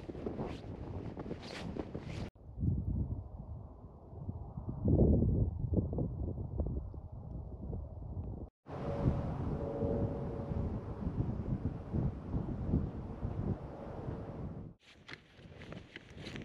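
Wind buffeting the microphone, with footsteps crunching through snow in the first two seconds and again near the end. The sound changes abruptly three times, muffled and gusty in one stretch and brighter and hissier in another.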